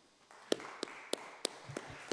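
Brief applause in a debating chamber: four sharp claps about a third of a second apart, close to a microphone, over fainter scattered clapping, with a couple of low thuds near the end.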